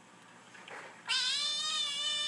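A kitten meowing in a video played through a laptop's speakers: one long, high meow starting about a second in.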